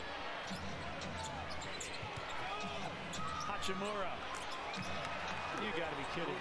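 NBA game broadcast audio played back quietly: steady arena crowd noise, a basketball being dribbled on the court, and a play-by-play announcer talking faintly.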